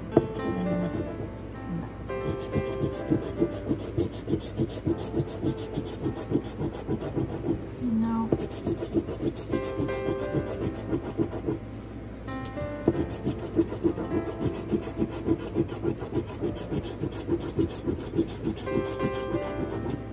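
Gold metal coin scraping rapidly back and forth over the scratch-off coating of a paper lottery ticket: a fast, continuous run of rasping strokes, broken by a few short pauses.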